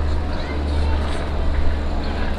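Steady low rumble of city street traffic, with no single event standing out.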